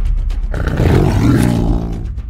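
A big cat's roar used as a sound effect for a sabre-toothed cat, starting about half a second in and falling in pitch near the end, over background music.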